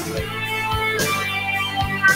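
Acoustic guitar strummed in a steady rhythm, with a woman singing over it.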